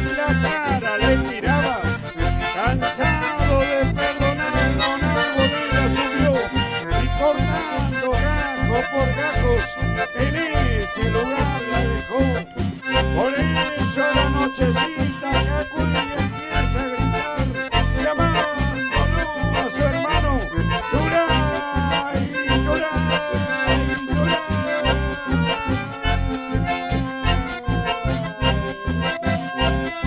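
Live band playing an instrumental dance passage: several accordions carry the melody over strummed acoustic guitars, electric bass and a steady beat.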